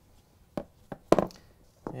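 A few short clicks and knocks from handling a wire stripper and a dryer's wiring. The sharpest knock comes just over a second in.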